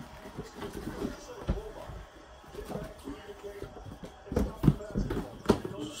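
Cardboard shoeboxes being handled: a string of light knocks, taps and scraping as a shoebox is pulled from a stack and its lid opened, the loudest knocks coming in the second half.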